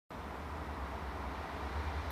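Steady low rumble with faint hiss: background noise on the voiceover track, starting after a split-second dropout at the very beginning.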